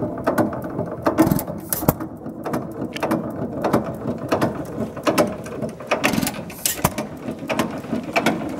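Associated Chore Boy hit-and-miss gas engine with gooseneck trip, built about 1919–1920, running very slowly: a steady clatter of clicks from its valve gear and trip mechanism, with a few much louder strokes where it fires, a pair about a second and a half in and another pair past the six-second mark.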